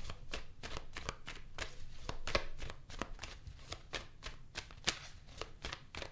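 A deck of tarot cards being shuffled by hand: a quick, uneven run of crisp card clicks and flicks, several a second.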